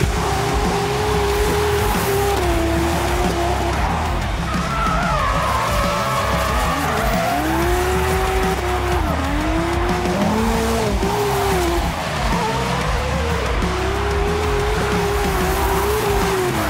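A drift car's engine revving hard and rising and falling in pitch again and again through a slide, over tyre squeal, with music underneath.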